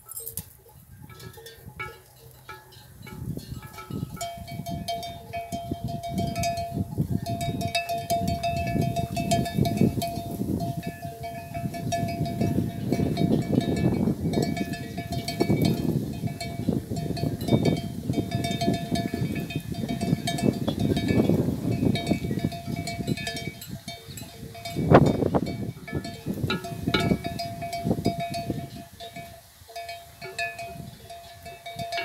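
Bells worn by grazing water buffalo, ringing and clanking on and off. Through the middle there is a louder close rustling, crunching noise, and about 25 seconds in comes a single loud knock.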